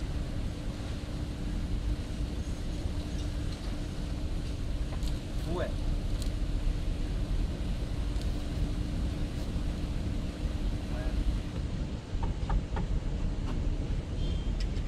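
Steady low rumble of background noise with a faint steady hum under it. A brief voice sounds about halfway through, and a few light knocks come near the end.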